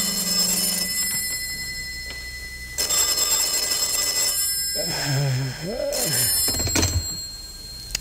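Telephone bell sound effect ringing in a radio drama: one ring ends about a second in, and a second ring of under two seconds starts about three seconds in. A short mumbled voice and a clunk follow near the end.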